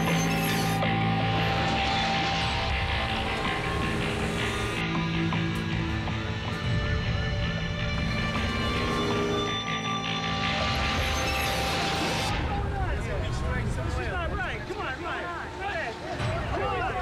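A film soundtrack played over room speakers: music runs through most of the stretch, with some mechanical clatter. From about twelve seconds in, several people's voices take over as onlookers talk.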